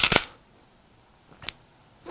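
Two shots from a Smith & Wesson M&P380 Shield EZ .380 ACP pistol: a sharp report right at the start and a weaker one about a second and a half later.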